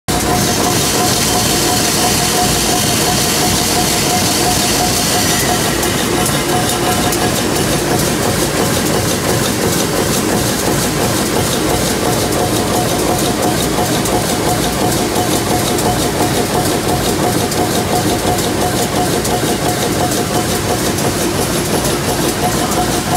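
Wire-processing machinery running steadily as wire feeds through roller guides, with a steady whine throughout and a hiss that fades out about five seconds in.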